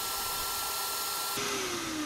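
Vacuum cleaner running with its attachment wrapped in a sock and a paper napkin, sucking up flour through the two materials. It is a steady whine and rush of air, and its pitch sinks a little in the last half second.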